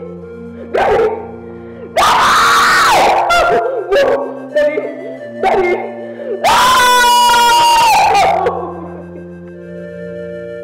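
A woman screaming and wailing: a short cry, then two long loud ones, the last held on one pitch, with smaller sobbing cries between, over steady sustained background music.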